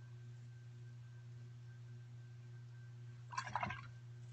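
Steady low hum, then about three seconds in a short scraping rustle as a paintbrush is dabbed into paint on the palette.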